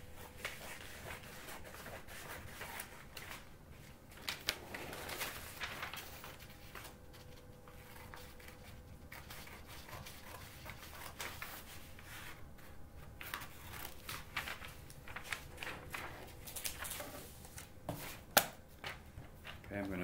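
Paper drawing sheets being handled and slid across a drawing board, rustling on and off, with small knocks and one sharp click near the end.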